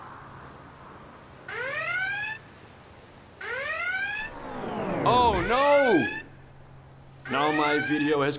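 Siren-like whooping: two rising whoops, each a little under a second long, then a quick run of rise-and-fall wails, and a voice breaking in near the end.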